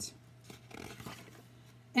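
A picture-book page being turned: a brief, soft paper rustle about half a second in.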